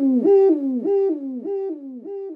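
Owl-like hooting: a quick run of about five 'hoo' notes, each dropping in pitch.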